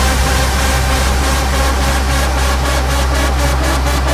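Big room house track in a build-up section: a sustained deep bass note under a rising white-noise wash, with rhythmic pulses in the high end starting about a third of the way in and growing sharper toward the end.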